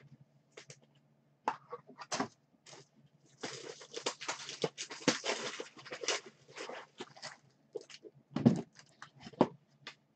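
Trading cards being handled at a table: scattered clicks and taps, then several seconds of rustling and sliding, and one louder knock about eight and a half seconds in.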